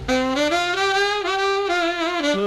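Tenor saxophone solo in a 1959 rockabilly record: the horn steps up to a long held note that falls away near the end, with the backing band quieter underneath.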